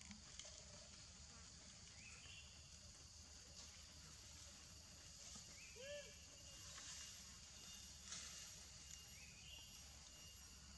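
Faint forest ambience: a steady high insect hiss, with a short rising call repeated about every three to four seconds and one arched, pitched call about six seconds in.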